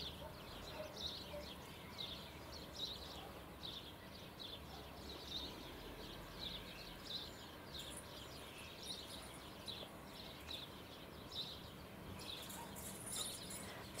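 A small bird chirping over and over, short high notes about twice a second, faint over quiet garden ambience.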